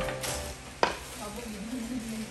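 Rustling and handling noise as flat-pack furniture panels are lifted and shifted in an open cardboard box, with one sharp knock just under a second in as a panel is set down against another.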